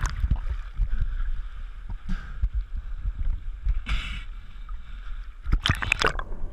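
Water sloshing and splashing against a GoPro HERO 3 Black's waterproof housing at the sea surface, heard muffled through the case with irregular low thumps. A brief splash comes about four seconds in, and a louder run of splashing comes near the end as the camera goes under.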